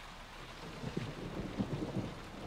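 Steady rain falling, heard on a TV drama's soundtrack as an even hiss with faint low patters.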